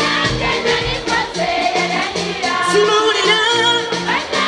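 Live pop band playing with voices singing over a steady beat: drum kit, electric guitars and keyboard.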